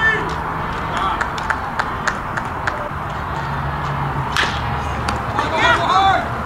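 Players and spectators at a baseball game calling out across the field, over a steady background noise. A few sharp knocks stand out, the loudest about four and a half seconds in, and voices shout again near the end.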